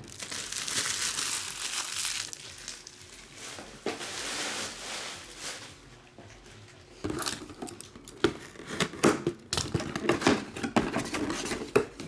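Crinkling of plastic shrink-wrap being pulled off and crumpled, in two long stretches, then a run of sharp clicks and rustles as the cardboard box is handled and opened.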